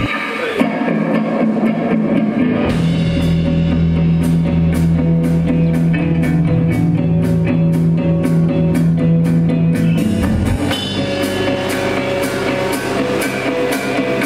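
Live rock band playing an instrumental passage on electric guitars, bass guitar and drum kit. The drums come in with a steady beat about three seconds in, and a long held low note gives way to a new pattern about ten seconds in.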